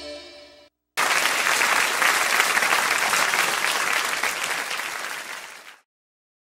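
The live band's final chord fading out, then audience applause that starts suddenly about a second in and stops abruptly near the end.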